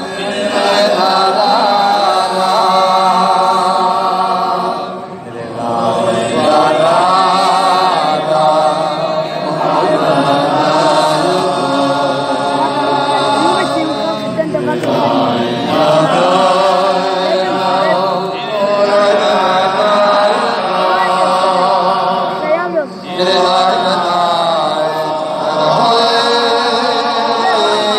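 Men's voices singing a slow, chant-like melody in long held notes with a slight waver, heard through loudspeakers over an open-air crowd. It breaks off briefly about five seconds in and again near the end.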